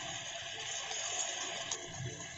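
Vegetables frying in oil in a metal kadhai over a medium gas flame: a steady, soft sizzling hiss, with a brief click shortly before the end.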